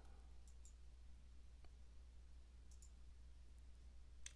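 Near silence: a faint steady low hum with a few faint, short clicks.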